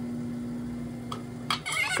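Electric pottery wheel running with a steady hum and a low rumble, the hum stopping about a second and a half in, with a couple of faint clicks.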